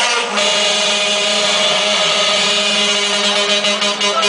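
Hardstyle dance music played loud over a club sound system: a held synth chord with no kick drum, a breakdown in the track.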